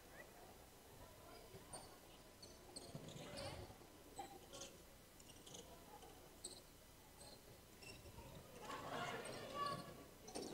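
Faint sounds of a basketball game in a gym: sneakers squeaking on the hardwood floor and a ball bouncing, with faint voices about three seconds in and again near the end.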